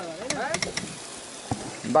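A brief stretch of voice in the first second, with a few sharp clicks, over a steady crackling hiss.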